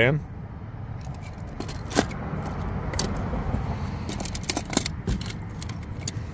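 Metal die-cast toy cars clinking and rattling against each other and a plastic carrying case as a hand sorts through them, with scattered sharp clicks starting about a second and a half in.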